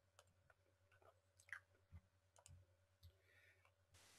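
Near silence with a few faint clicks from a computer mouse being clicked and its scroll wheel turned.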